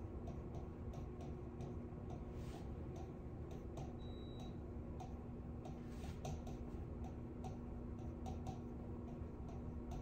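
Stylus tapping and clicking on the glass of an interactive touchscreen display during handwriting: light, irregular clicks over a steady low hum.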